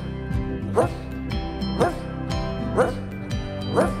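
Children's song backing track with a steady beat. A dog's bark sounds about once a second, in time with the music.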